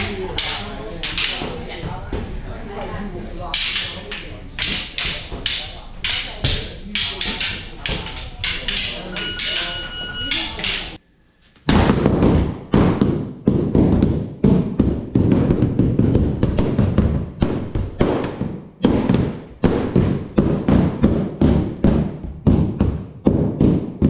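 Escrima sticks clacking together in rapid, overlapping exchanges of partner drills, with a murmur of voices in a large hall. After a short break, one man strikes a padded standing bag with sticks at about two or three blows a second, each hit a dull whack.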